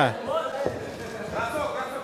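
Faint voices in a large hall, with a single thud a little over half a second in.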